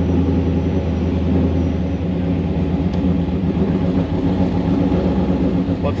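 Plymouth Fury III's stroked 383 big-block V8 with side-exit exhausts idling steadily, heard from inside the open convertible.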